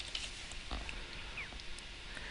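A few faint computer keyboard clicks over low room noise as code is typed.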